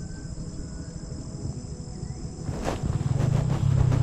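Steady high-pitched chirring of insects over a low rumble, the rumble growing louder with a few knocks from about two and a half seconds in.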